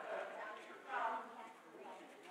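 Indistinct voices of people talking, too faint for words to be made out.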